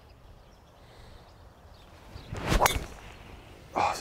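Golf driver swung through with a short whoosh, then one sharp crack as the clubhead strikes the teed-up ball, about two and a half seconds in: a good strike.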